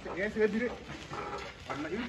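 Voices speaking in short exclamations; nothing else stands out.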